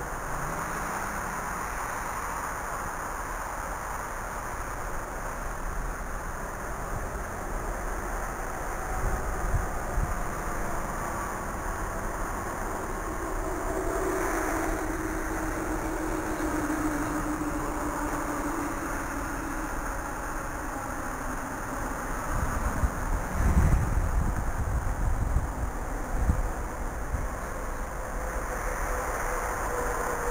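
Wind buffeting the microphone over a steady hiss, with gusts about ten seconds in and again for several seconds past the twenty-second mark. Behind it, the faint whine of a distant quadcopter's motors drifts up and down in pitch as the throttle changes.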